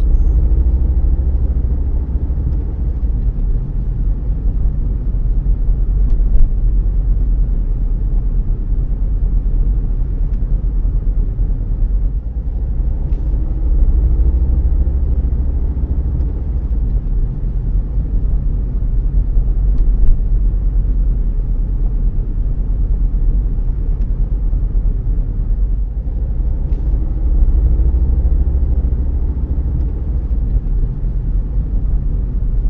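Car interior driving noise: a steady low rumble of engine and tyres on the road, with a faint rising engine note about three times as the car picks up speed.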